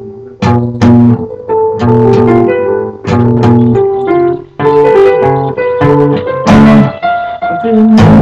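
Guitar chords strummed over and over in a loose rhythm, about two strums a second, each chord ringing on until the next.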